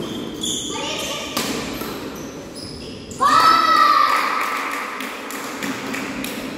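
Badminton rally on a wooden indoor court: sharp racket-on-shuttlecock hits and brief high shoe squeaks, echoing in the hall. About three seconds in, a loud, high-pitched shout starts suddenly and lasts a second or two.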